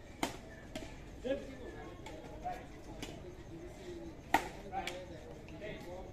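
Badminton rackets striking a shuttlecock: sharp, short cracks, two soon after the start about half a second apart and a louder pair a little over four seconds in.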